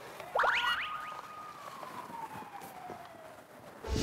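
Edited-in comic whistle sound effect: a few quick rising glides, then one long whistle tone sliding slowly downward, and a fast upward sweep near the end.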